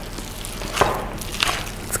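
Spoon folding a thick almond-meal carrot cake batter in a glass mixing bowl: soft squishing with three light clicks of the utensil against the bowl.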